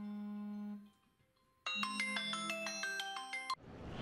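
Background music of short chiming mallet-percussion notes over a low held tone. It breaks off for under a second, resumes with a new phrase of notes, and stops just before the end.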